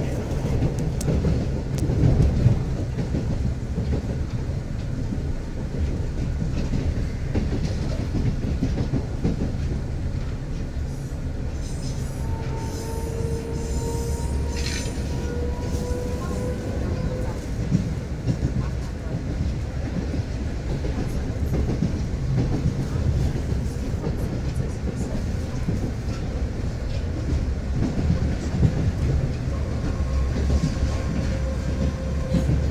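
Rusich articulated metro train running along the track, heard from inside the car: a steady low rumble of wheels and car body with irregular knocks from the rails. About halfway through, a faint tone rises slightly in pitch for a few seconds.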